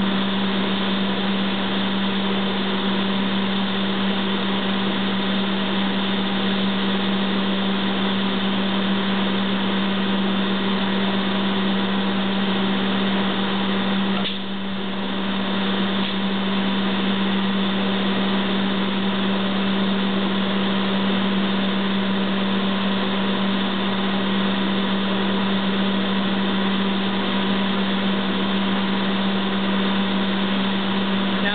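Steady drone of shop machinery with a strong low hum under a rushing noise, dipping briefly about halfway through and then carrying on unchanged.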